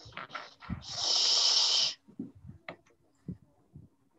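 A few short puffs of breath noise into a microphone, then a loud hiss of breath about a second long that cuts off sharply; faint clicks follow.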